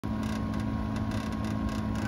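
Samsung air-source heat pump outdoor unit running, its fan blowing: a steady hum with a few held tones. The unit is working hard in a frost of about minus two degrees.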